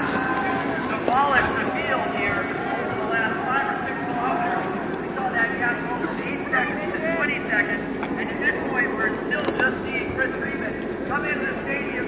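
Indistinct speech, with the voice of a race announcer giving commentary over a loudspeaker.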